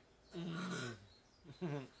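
A man's low, wordless vocal sound lasting about half a second and falling in pitch, then the start of a short laugh near the end.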